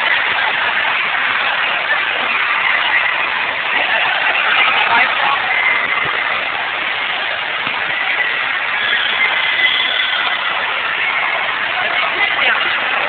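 Loud, steady swimming-pool crowd din: many voices mixed with splashing water, with no pause in it.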